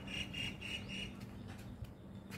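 A guineafowl calling a rapid run of short harsh notes, about four a second, that stops about a second in.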